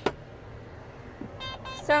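A single sharp click right at the start, then the low, steady hum of a John Deere combine running, heard from inside its cab.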